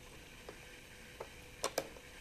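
Small clicks and ticks from a hand screwdriver turning a screw into a wooden chair seat frame: a few faint ticks, then two sharper clicks in quick succession near the end.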